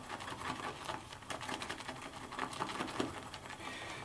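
Shaving brush worked briskly round a bowl of soft shaving soap, whipping the soap into lather: a faint, fast, even run of wet clicks and swishes from the bristles.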